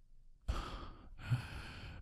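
A man's sigh, breathed out in two parts beginning about half a second in.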